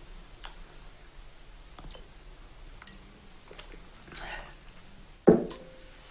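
A few faint, scattered clicks, then about five seconds in a sharp knock with a brief ring as a glass bottle is set down on the top of a wooden barrel.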